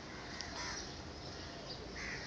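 Faint background sound: a pen writing on paper while a bird calls faintly in the distance.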